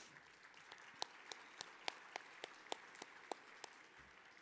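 Faint audience applause, a soft patter with a few separate claps standing out.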